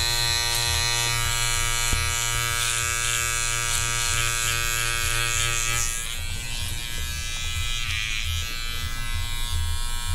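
Electric beard trimmer buzzing steadily while trimming a beard. The buzz drops away about six seconds in.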